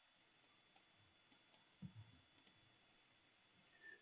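A few faint computer mouse clicks, scattered over the first two and a half seconds, against near silence.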